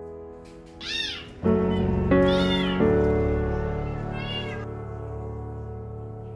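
Stray kitten meowing three times, short high calls that rise and fall in pitch, the second the longest, over soft piano background music.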